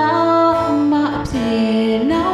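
Burmese pop song: a woman singing long notes that slide between pitches, over guitar accompaniment.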